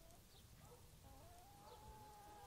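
Near silence, with a faint pitched sound in the background that holds one longer note through the second half.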